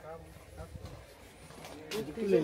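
Faint, indistinct voices of people talking, with one sharp click near the end.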